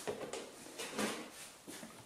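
Faint handling noise from a plastic battery charger being set in place and gripped on a tabletop: a few soft clicks and rustles.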